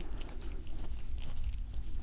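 Domestic cat licking close to a binaural microphone: a run of quick wet clicks and smacks over a steady low rumble.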